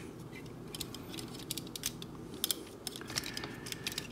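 Hard plastic parts of a Planet X PX-09S Senectus transforming robot figure clicking as they are swung around on their hinges and handled: scattered small clicks, with a couple of sharper ones about halfway through.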